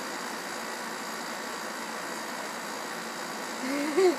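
Steady background hiss with no speech, then a girl's short laugh near the end.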